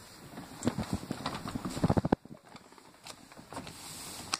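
Handling noise close to the microphone: a quick run of irregular knocks and rustles, the loudest just before the middle, then a sudden drop to quiet with a few fainter knocks near the end.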